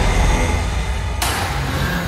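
Heavy electronic bass music from a DJ mix: a dense, distorted bass texture with a harsh noise layer that cuts in about a second in and a low bass note entering soon after.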